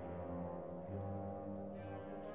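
Symphony orchestra playing slow, held low chords, with brass prominent; the chords shift a few times.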